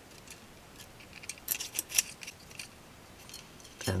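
Fingers picking and scratching at a woofer's open-circuit voice coil, giving small crackles and clicks from the thin copper winding and its paper former as the wire ends are traced and pulled, most of them bunched together around the middle.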